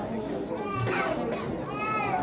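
Young children's voices chattering, with two short high-pitched child's calls rising above the murmur, one about a second in and one near the end.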